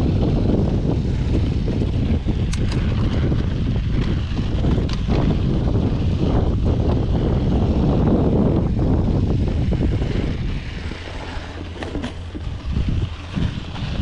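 Wind buffeting a GoPro's microphone over the rolling noise of a Yeti SB5 mountain bike's tyres on a dirt trail, a loud steady rumble with a few small clicks and rattles. The rumble eases off about ten seconds in.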